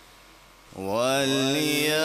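A male qari's solo voice in melodic Quran recitation, coming in about three-quarters of a second in after a faint hum and holding one long, wavering note.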